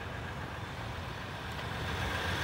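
A steady, low vehicle rumble with no distinct events.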